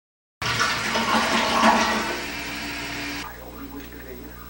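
A loud, even rushing noise like running or flushing water starts abruptly and cuts off about three seconds in, leaving a low steady hum.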